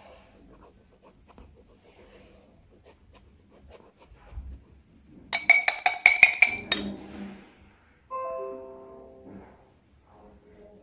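A quick flurry of bright chiming strikes about five seconds in, followed near eight seconds by a run of xylophone-like notes stepping down in pitch. Before these, a faint rubbing of the face-paint applicator on the doll's forehead.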